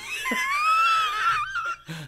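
A man's high-pitched wheezing laugh: one long squeal lasting about a second and a half, rising slightly in pitch.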